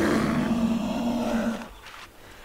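A bear roar sound effect: one long roar that dies away about one and a half seconds in.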